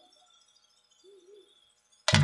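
Near silence, with two faint, short hoots close together about a second in.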